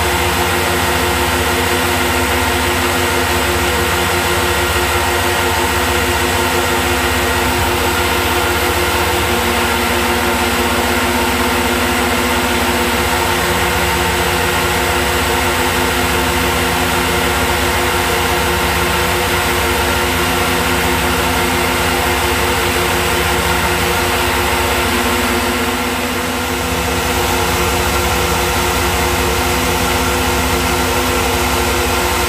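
Tormach PCNC 1100 CNC milling machine running, its spindle driving a small end mill through a plate under flood coolant: a loud, steady machine drone with several held tones. The tones shift slightly in pitch a few times.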